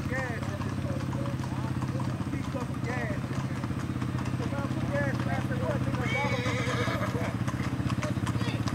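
Hooves of several horses clip-clopping on a paved road, growing clearer toward the end, over the steady low drone of a vehicle engine running at slow speed. Voices call out over the top.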